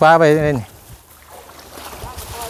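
A voice speaks a few words in a short burst, then a faint, steady background hush follows.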